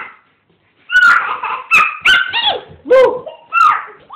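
Small dog whimpering and yelping: a run of short, high-pitched cries that bend and fall in pitch, starting about a second in.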